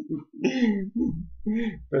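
A man clearing his throat, making several short wordless voice sounds in a row.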